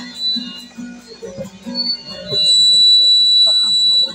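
Acoustic guitars playing softly, then a loud, high, steady whistle comes in a little past halfway and holds for about a second and a half, drowning out the guitars.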